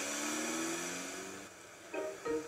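Cartoon car engine sound effect of the family's little red car driving away, a steady hum sinking slightly in pitch and fading out over about a second and a half.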